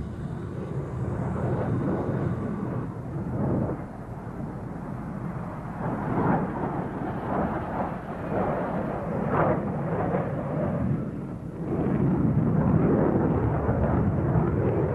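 Jet engines of an SR-71 Blackbird at takeoff power as it rolls and lifts off: a steady rushing noise that swells and fades, growing louder about twelve seconds in.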